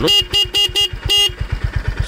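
Honda CB350RS's electric disc horn sounding in five quick toots, all within the first second and a half, quite loud, over the 348 cc single-cylinder engine idling with a steady low pulse.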